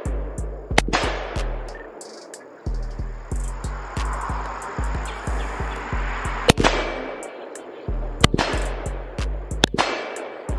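Hip-hop beat with a thumping bass pattern, over which an AR-style rifle fires several sharp single shots: one about a second in, then a spaced string in the last few seconds.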